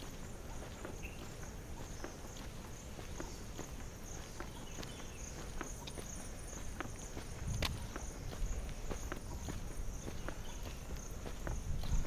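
Footsteps at a steady walking pace on a paved road, about two steps a second, over a steady high-pitched chirring of insects. A brief low rumble comes a little past halfway.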